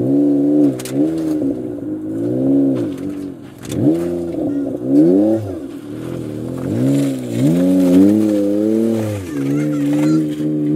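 Jeep Wrangler's engine revving up and falling back again and again, about six swells of throttle, under load as it crawls up a steep rock ledge.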